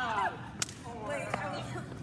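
A single sharp crack about half a second in, among people's voices, with a fainter click a little after one second.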